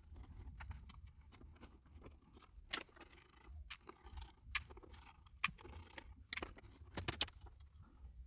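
Faint, irregular clicks and light scraping of plastic as Wi-Fi antenna leads are pried out of an iBook G3 clamshell's plastic lid case, with a few sharper clicks in the second half.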